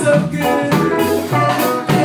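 Live ska-reggae band playing: electric guitars, drum kit and keyboard on a steady beat, with a voice singing.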